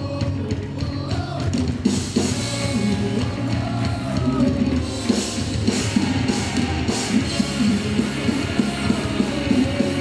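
Live rock band playing through a PA: electric guitars, bass guitar and drum kit, with singing over them.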